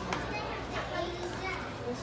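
Indistinct talking, with children's voices among it, over a steady low hum.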